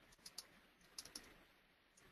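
Faint clicks from a computer keyboard: two pairs of keystrokes, one near the start and one about a second in.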